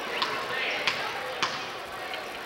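A basketball bounced three times on a hardwood gym floor, a little over half a second apart, as a player dribbles at the free-throw line before her shot.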